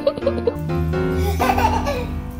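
A baby giggling in short bursts, at the start and again near the end, over steady background music.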